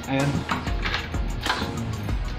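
Background music with a short spoken word at the start, and a few sharp clicks as a key goes into and turns in a newly fitted deadbolt lock's cylinder.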